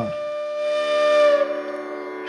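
Background music: a sustained drone of steady held notes with a long wind-instrument tone over it that slides down a little and fades.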